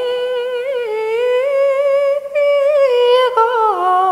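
An unaccompanied solo voice singing a slow Irish-language air, holding long notes with small ornaments and slides, then stepping down in pitch near the end.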